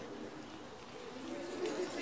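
Dove cooing, low and wavering, over faint crowd chatter.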